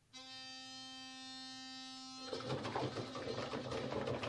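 A single steady musical note, held without wavering for about two seconds, breaks off into a louder, rough, noisy stretch full of irregular short hits.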